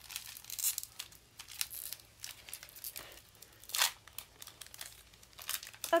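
Foil wrapper of a Pokémon card booster pack crinkling and being torn open by hand: a run of short, irregular rustles and rips, the strongest just under a second in and near four seconds.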